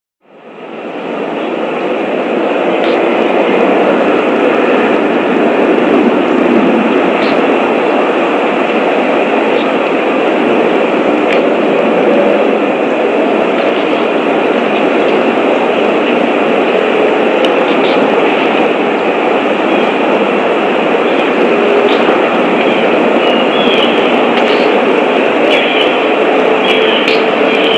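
Steady, loud rushing background noise picked up by the outdoor nest camera's microphone, with a few faint high chirps near the end.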